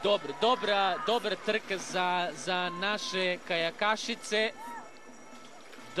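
A voice speaking, with music, for about the first four and a half seconds, then a quieter stretch.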